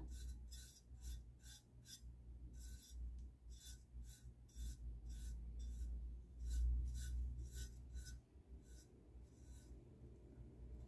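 Paintbrush bristles scratching over a metal tray in short, quick strokes, about two to three a second with brief pauses, as primer is brushed onto the rusted piece. A low hum runs underneath and stops about eight seconds in.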